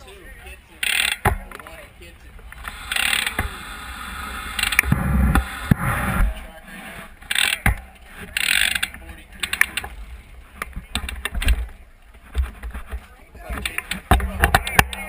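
BMX rear hub freewheel ratcheting in several bursts of rapid clicking as the bike rolls without pedalling, with a few sharp knocks.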